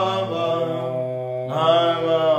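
Two men singing a Shona gospel song a cappella, in long held notes over a steady low note, with a new phrase starting about one and a half seconds in.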